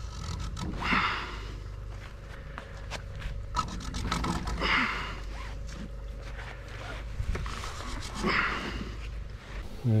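A man breathing hard while hauling hand over hand on a rope under a heavy load: three long, heavy exhalations about three and a half seconds apart, with scattered small clicks and scrapes from the rope and gloves.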